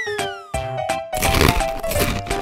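Children's background music with a falling cartoon whistle at the start, then from about a second in a loud, crackly crunching, the sound of the monster puppet chomping into raw green beans.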